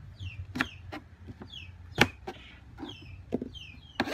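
A kitchen knife cutting through an eggplant onto a plastic cutting board: several sharp knocks, the loudest about halfway. Behind them, birds peep with short, high, falling chirps that keep repeating.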